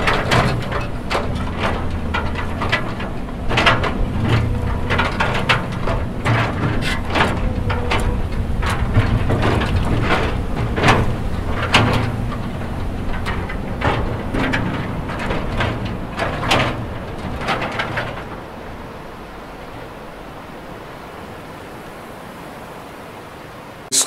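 Excavator working among rock boulders: its engine runs low and steady under many irregular knocks and clatters of rock and metal. Near the end the machine sounds drop away, leaving a quieter steady rushing noise.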